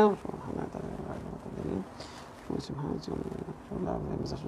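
Quiet, indistinct murmured speech: a man's low voice in short mumbled stretches, too soft to make out words.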